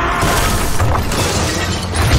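A crash of things smashing and shattering in a film's sound mix, a noisy clatter lasting most of the two seconds, with the score running underneath.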